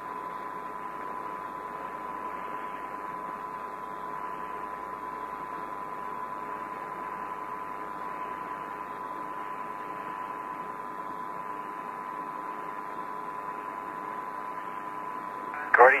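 Steady hiss of the Apollo air-to-ground radio link between transmissions, with a thin steady tone running through it.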